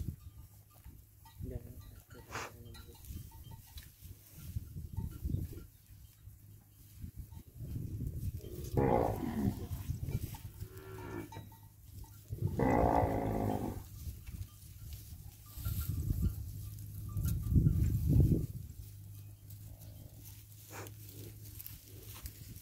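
Cattle mooing: two drawn-out moos around the middle, each about a second and a half long, with a fainter call earlier. Bursts of low rumbling noise come and go, loudest near the end.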